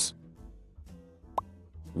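Quiet background music with a single short rising plop, a transition sound effect, about one and a half seconds in.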